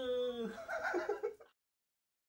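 A high-pitched cartoon voice imitating SpongeBob SquarePants holds out the end of a shouted word, then gives a short, choppy laugh. The sound cuts off abruptly to dead silence about one and a half seconds in.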